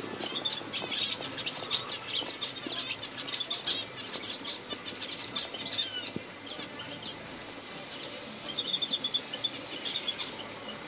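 A flock of small aviary finches and canaries chirping, many short high calls overlapping, with a brief rapid trill near the end.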